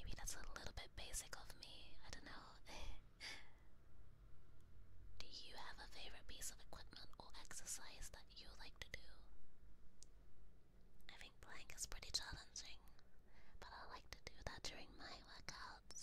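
A woman whispering in several runs of phrases, with short pauses between them.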